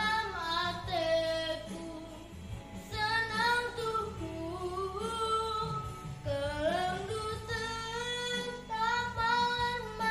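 A young girl singing solo, with long held notes that glide up and down in pitch.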